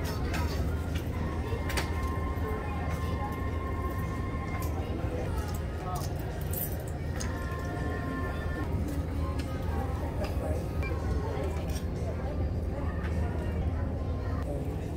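Indistinct voices and background music, with a couple of long held notes, over a steady low hum and a few faint clicks.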